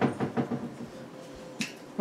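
Light clicks and knocks off-camera as household things are handled: several quick ones in the first half second, then quiet room noise, then one more sharp click near the end.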